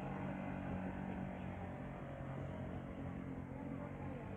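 Small outboard motor on a skiff running steadily under way, a steady drone that fades slightly as the boat moves off.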